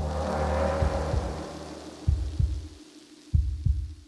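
Horror-style sound-effect sting: a low drone with a swelling whoosh and heartbeat-like paired thumps, about three double beats, fading towards the end.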